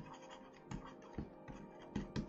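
Faint scratching of a stylus writing on a tablet, a string of short strokes with a few light taps.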